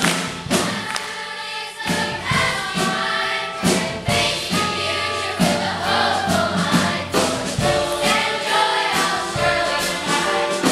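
Children's school choir singing together, with sharp percussive beats running through the song.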